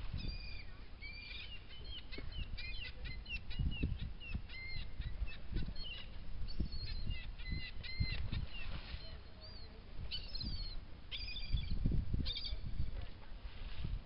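Seabirds feeding over water: many short, high calls in quick runs, pausing briefly about two-thirds of the way through. Irregular low thumps and rumbling sit underneath.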